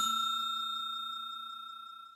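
Notification-bell ding sound effect ringing out: one clear high bell tone fading away steadily.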